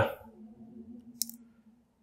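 Tape being peeled off a brass key, heard as one short, faint tick a little over a second in.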